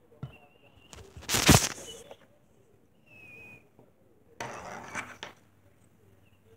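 Handling noise as the recording phone is picked up and moved: two rustling, knocking bursts, the louder about a second in and another past four seconds.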